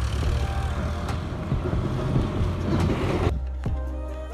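Wind buffeting a handheld phone's microphone, with music faintly underneath. The wind noise cuts off suddenly about three seconds in, leaving only the music.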